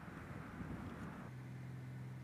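Faint background noise, with a low steady hum that comes in just over a second in.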